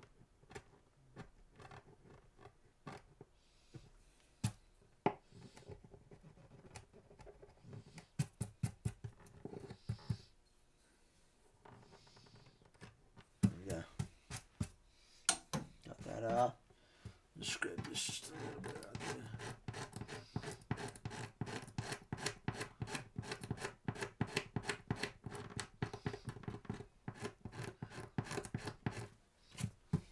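A chisel scraping the finish off a guitar's spruce top under the bridge, in short scratchy strokes. The strokes are scattered at first, then fast and nearly continuous through the second half, clearing finish that is lifting the bridge.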